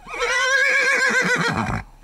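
A horse whinnying: one long call with a rapidly shaking pitch that trails off near the end.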